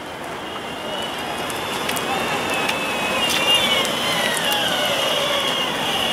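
Electric longboard rolling over asphalt as it approaches: a hiss from the wheels that grows louder, with the drive motor's high whine that sinks gradually in pitch as the board slows.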